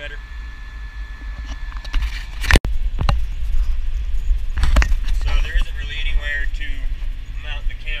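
Tractor engine running as a steady low rumble, first outside beside the hitched ripper, then, after a loud knock and a cut, heard from inside the cab under a man's voice.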